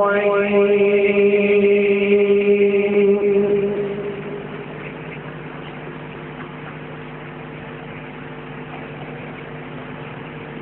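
A man reciting the Qur'an in melodic qirat style, holding one long note that fades out about three and a half seconds in. A pause follows, with only faint steady tones lingering.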